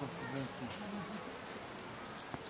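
Insects keeping up a steady high-pitched hum, with a man's voice trailing off in the first moments.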